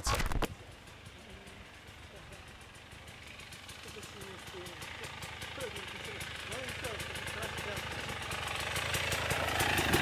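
Off-road dirt bike engine approaching along a trail, growing steadily louder throughout.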